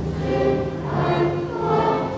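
Choir singing held notes over orchestral accompaniment.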